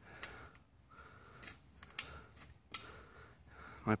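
A long steel pry bar levering at the wooden edge of a pool wall, giving a few sharp, separate clicks and cracks spread over a few seconds.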